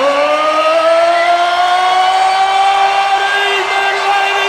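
A man's voice amplified through a concert PA, holding one long sung note that slowly rises in pitch.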